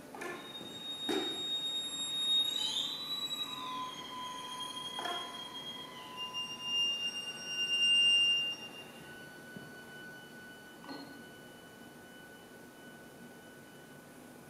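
Chamber ensemble of strings and winds playing sparse contemporary music: thin, very high held tones that slide in pitch, overlapping and handing over to one another, with a few soft short accents. The sound swells near the middle, then thins to one faint held high note.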